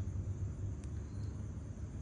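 Steady low background rumble, with a faint click a little under a second in.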